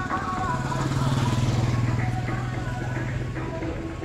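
A motorcycle engine passing by on the road, its steady note swelling and then dying away about three and a half seconds in, over background music.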